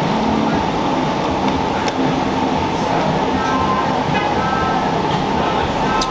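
Steady background din of a shop: a constant hum with faint voices and music in it, and no clear bite or crunch standing out.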